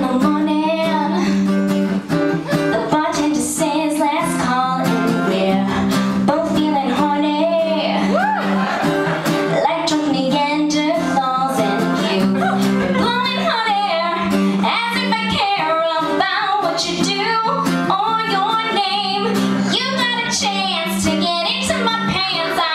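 A woman singing a song live, accompanied by an acoustic guitar playing steady chords.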